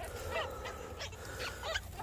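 Newborn Magpie Rex rabbit kits squeaking, several short high chirps scattered through two seconds, with soft rustling of nest hay as hands part it.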